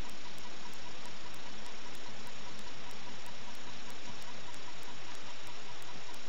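Steady hiss of recording noise, with no other sound standing out.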